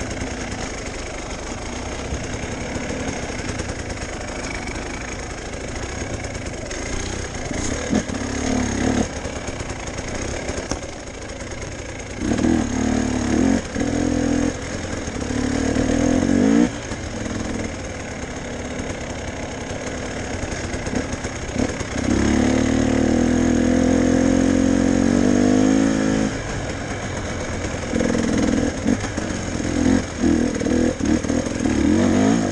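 Enduro motorcycle engine being ridden on a dirt trail, the throttle opening and closing. There are louder bursts of acceleration about twelve seconds in and again near sixteen seconds, then a longer pull of about four seconds in which the pitch climbs before it drops back.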